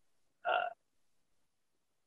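A man's single short hesitant 'uh', about half a second in; otherwise dead silence.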